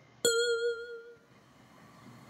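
A single bell-like chime struck about a quarter second in, ringing with several clear tones and dying away over about a second: the cue in the course book's recorded story that moves on to the next picture.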